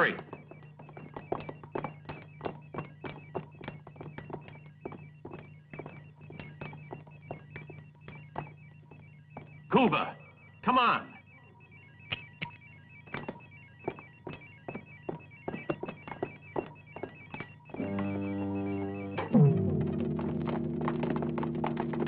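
Electric alarm bell ringing continuously over a low steady hum, with a run of sharp knocks and clatter. About eighteen seconds in it gives way to synthesizer music with deep, downward-swooping tones.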